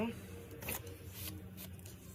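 Quiet rustling and a few light knocks as a taped watercolor board is slid across a paper-covered tabletop.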